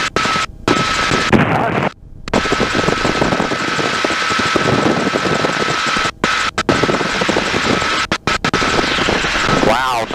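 1952 Bell 47G helicopter's engine and two-blade main rotor heard from inside the cockpit in flight: a loud, dense, rapidly pulsing drone. A thin steady tone runs through most of it, and the sound cuts out briefly several times.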